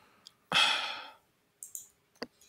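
A person sighing: one breathy exhale about half a second in that fades out quickly, followed by a couple of faint clicks near the end.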